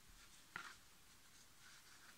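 Near silence with a short, faint rustle about half a second in and softer rustles later: hands handling a bar of soap inside a crocheted yarn pouch.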